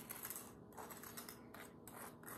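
Faint, irregular scraping and dabbing of a utensil spreading mayonnaise over soft slider rolls.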